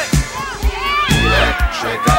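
A group of young children shouting and cheering together, many high voices overlapping, over background music with a steady beat.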